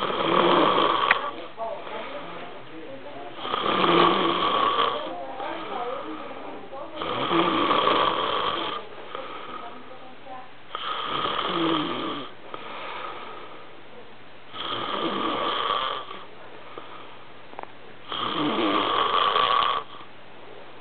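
A sleeping young man snoring through his open mouth: six loud snores about every three and a half to four seconds, with quieter breathing between them.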